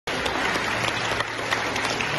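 Audience applauding: a dense, even patter of many hands clapping.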